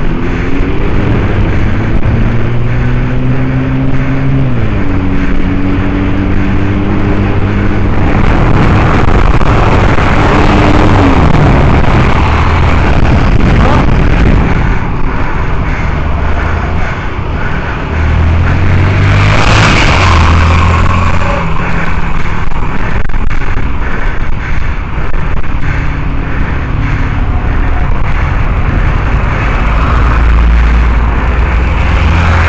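Road traffic heard from a moving bicycle: a nearby vehicle engine hums steadily and drops in pitch twice. Louder rushes of passing cars come through the middle and again about two-thirds of the way in.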